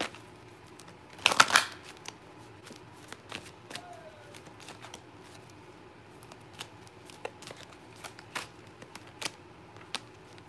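A deck of oracle cards, Walu Child Readings Love Messages, being shuffled by hand: one loud burst of shuffling about a second in, then scattered soft clicks and slaps of cards against each other.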